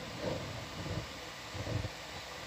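Steady hiss of a live audio feed between voices, with a few faint low rumbles under it.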